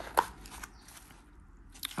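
Hands handling a wooden pen box in a foam sleeve: a sharp click just after the start, a faint rustle of foam packaging, and a softer click near the end.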